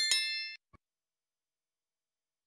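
A single bright bell-like ding that strikes at the start and rings out over about half a second, followed by a faint click; then nothing.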